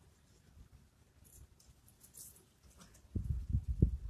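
Several soft, low thumps and knocks in quick succession near the end, a body and knees coming down on a wooden plank during push-ups. Before that, only a few faint hissy sounds.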